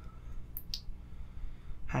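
Two light clicks in quick succession about half a second in, small handling clicks, over a faint steady low hum.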